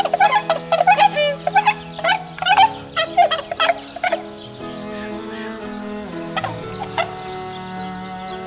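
Swans calling in a quick series of loud honking calls, about three a second, over the first half, then only a couple of single calls. Sustained background music notes run underneath, and faint high chirps come in near the end.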